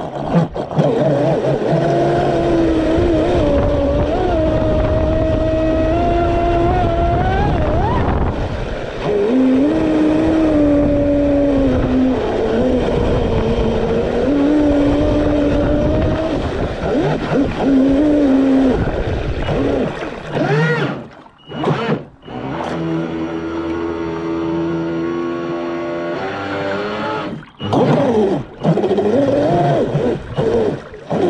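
The Traxxas M41 RC speedboat's brushless electric motor and propeller whine, with the pitch rising and falling as the throttle changes, over a wash of water noise. About two-thirds of the way in, and again near the end, the motor briefly cuts out as the throttle is let off.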